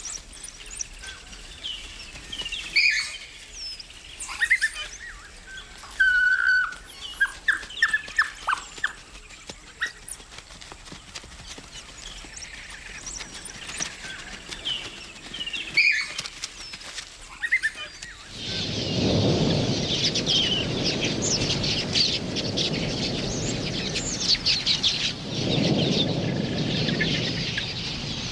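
Scattered high chirps and whistles, then, about two-thirds of the way in, a dense, steady rush of wingbeats and chirping from a huge flock of queleas.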